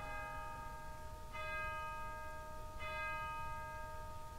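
A bell struck three times, about a second and a half apart, each strike ringing on into the next.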